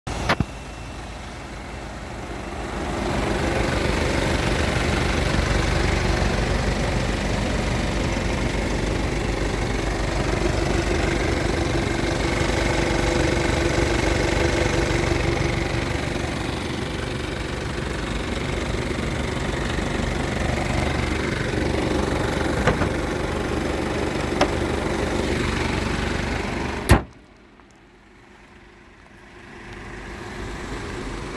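Kia Sportage engine idling steadily, heard up close with the bonnet open. Near the end a single sharp bang, after which the engine sounds much quieter.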